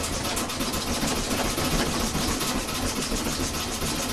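A hospital bed's metal frame and side rails rattling loud and fast, shaken by a patient's convulsive seizure movements.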